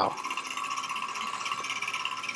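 Small twin-flywheel hot-air Stirling engine running fast, its piston and flywheels making a steady, rapid, even ticking mechanical sound.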